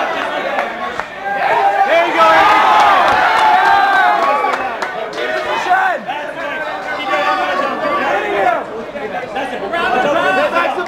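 Crowd of fight spectators shouting and talking over one another, many voices at once, loudest a couple of seconds in.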